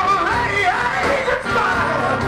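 Live soul-funk band with electric guitar, bass, keyboards and drums playing loudly, a high lead line bending and sliding in pitch over the band.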